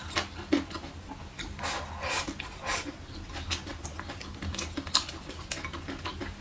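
Close-miked eating sounds: irregular wet mouth clicks and chewing of braised pork, with light clicks of wooden chopsticks picking at food in a ceramic bowl.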